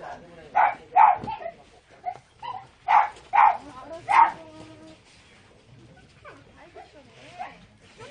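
A dog barking: five short, sharp barks, two and then three, within the first four seconds or so.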